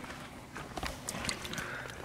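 Faint handling sounds: a few soft knocks and rustles as a carp is held and moved on a padded unhooking mat.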